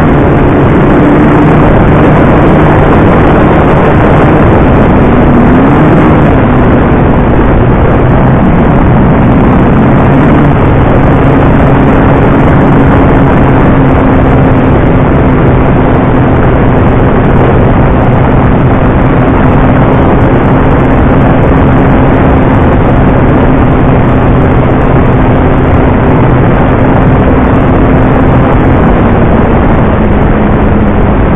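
Electric motor and propeller of a Dynam T-28 Trojan RC model plane running at a steady pitch in flight, under loud wind rushing over the onboard microphone. The motor tone wavers briefly about six seconds in and drops a little near the end.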